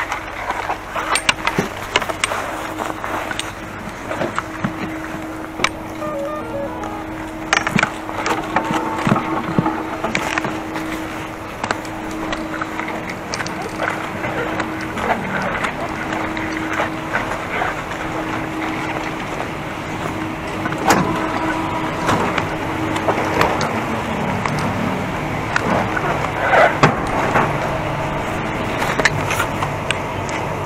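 Ski-lift station machinery humming with a steady low tone that stops near the end, under scattered clatter and knocks of skis and ski boots.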